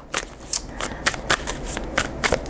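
A tarot deck being shuffled by hand: a quick, irregular patter of card clicks, about five or six a second.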